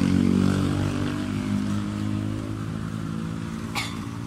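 An engine running steadily, its even hum slowly fading, with a single sharp click near the end.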